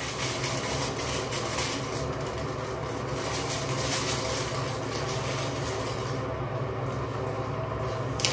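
Steady low mechanical hum with an even hiss throughout, like a running fan.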